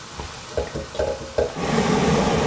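Silicone spatula stirring and scraping onions, celery and mushrooms in a non-stick pan over a soft frying sizzle, a few separate scrapes. A steadier hiss swells in near the end.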